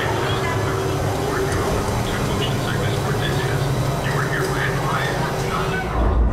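Theme-park dark-ride vehicle pulling into the loading station with a steady low hum, under scattered voices of people in the station.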